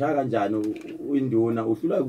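A man's voice speaking continuously.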